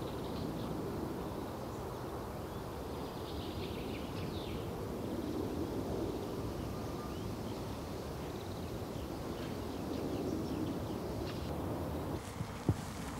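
Steady outdoor background noise with a few faint, high chirps scattered through it.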